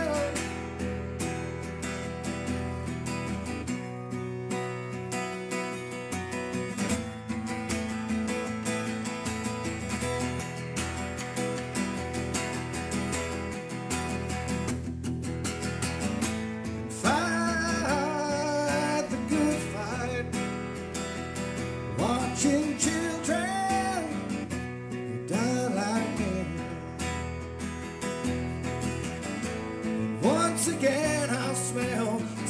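Acoustic guitar strummed with a man singing live into a microphone. The first half is mostly guitar alone; from about halfway through the voice comes in and out.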